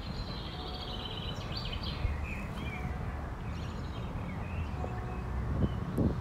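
Outdoor park ambience: small birds chirping, with trills clustered in the first couple of seconds, over a steady low background rumble.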